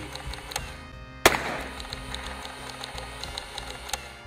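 Background music, with a single sharp gunshot crack about a second and a quarter in.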